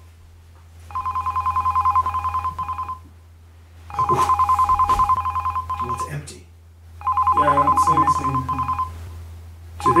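A telephone ringing with a rapid two-tone trill, each ring lasting about two seconds with a second's gap between. Three full rings sound, and a fourth begins near the end.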